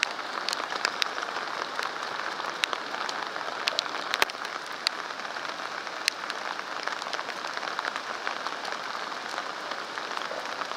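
Steady rain falling, with scattered sharp ticks of drops striking close by.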